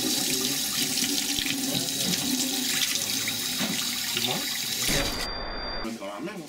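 Kitchen tap running, water pouring from the faucet into a glass held under it. The flow gives way about five seconds in to a short, low electronic buzz.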